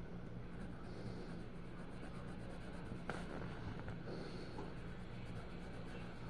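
Colored pencil scratching on paper as a flower drawing is shaded in, over a steady low hum. A single sharp click about three seconds in.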